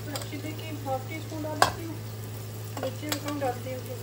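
Onion and tomato sizzling in a frying pan over a steady low hum, with the clinks and scrapes of a stainless-steel spice box being moved. A sharp metal clank comes about one and a half seconds in, and a smaller one a little after three seconds.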